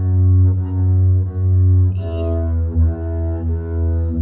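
Double bass bowed in two long sustained notes, F-sharp then E, stepping down about halfway through: a slow scale line in a beginner's folk-song exercise.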